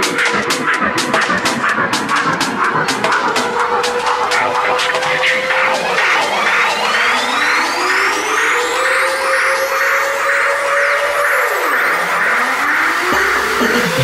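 Tech house track in a breakdown with no kick or bass. A steady hi-hat tick runs at first, a synth line slides up and down in pitch, and from about five seconds in, rising sweeps build up to the end.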